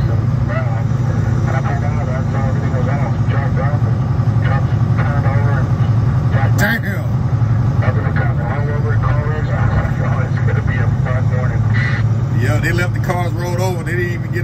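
Semi truck's engine and road noise droning steadily inside the cab at highway speed. A person's voice talks indistinctly over it, and there is one sharp click about seven seconds in.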